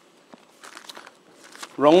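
Faint rustling and crinkling of thin Bible pages being turned by hand.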